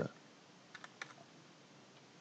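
A quick run of about four faint computer keyboard keystrokes a little under a second in, deleting a typed number to correct it.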